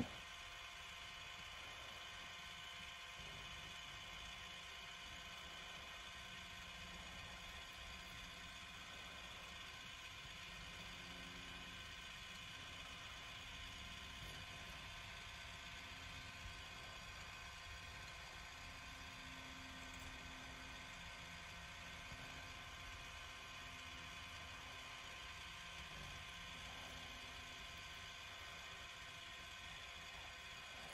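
Faint, steady whir of a tumbler turner's small electric motor turning the cup, a constant hum of several fixed tones.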